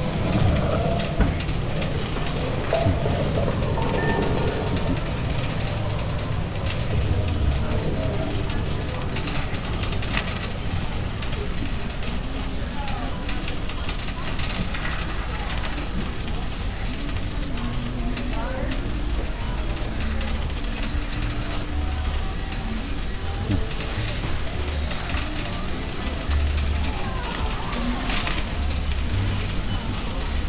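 Shopping cart rolling over a concrete store floor with a steady low rumble, under indistinct chatter of other shoppers and faint background music.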